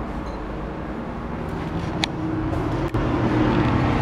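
Road traffic noise from the street, a steady rumble that gets louder about three seconds in, with a brief high squeak about two seconds in.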